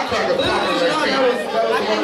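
A man talking through a microphone over the chatter of a crowd.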